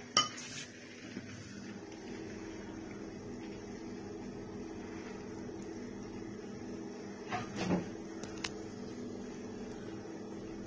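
Light handling sounds on a kitchen table while ravioli are shaped by hand: a sharp knock just after the start, then a few light knocks and clicks from about seven to eight and a half seconds in, over a steady low hum.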